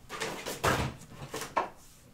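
A few short, soft knocks and scrapes of hands handling card and craft items on a wooden tabletop.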